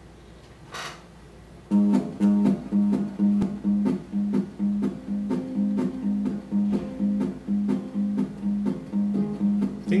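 Small-bodied acoustic guitar strummed in a steady rhythm of about two strums a second, starting about two seconds in as the song's introduction. A voice starts singing right at the end.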